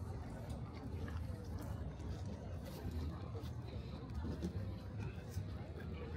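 Open-air flea market ambience: faint talk and chatter of shoppers around the stalls over a low, steady rumble.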